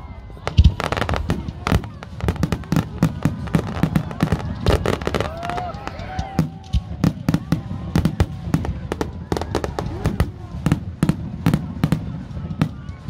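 Fireworks display: aerial shells bursting in quick succession, many sharp bangs and crackles, several a second, with hardly a gap.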